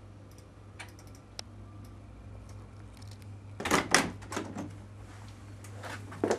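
Quiet room tone with a steady low hum, scattered light clicks in the first second and a half, and a louder bout of knocks and rustles about three and a half seconds in.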